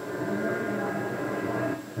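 A dense, muffled murmur lasting nearly two seconds in a ghost-hunting field recording, in the pause after a spoken question. The investigators take it for an electronic voice phenomenon (EVP), a voice answering with a name that nobody heard on the spot.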